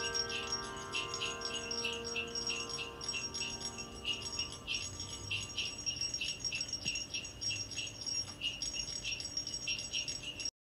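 The close of a Christmas song: a held chord fades away over the first few seconds while sleigh bells keep shaking in a steady rhythm.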